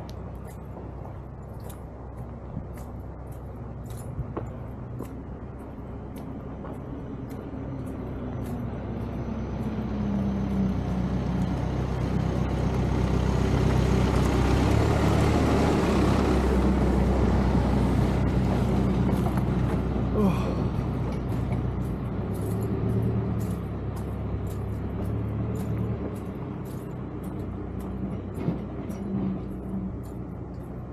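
A road vehicle approaches, passes close about halfway through with a rising then falling rush of engine and tyre noise, and fades away. Light, regular footsteps on the road surface continue throughout.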